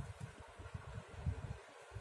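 Faint low rustling and handling noise as an embroidery needle and thread are drawn up through cloth by hand.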